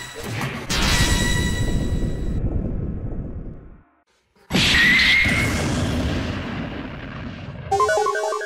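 Two loud explosion sound effects: the first hits about a second in and dies away over about three seconds. After a sudden cut to silence, the second hits at about the midpoint with a short rising whistle and fades slowly. It is staged as a can of ravioli blowing up in a microwave.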